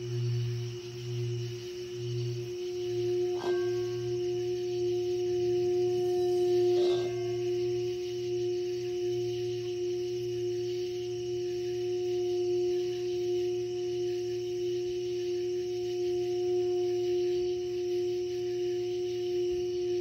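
Tibetan singing bowl ringing with a steady sustained tone and a slow pulsing wobble underneath, struck lightly twice, a few seconds in and again about seven seconds in.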